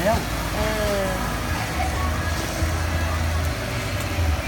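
A person's voice briefly at the start, then a low rumble.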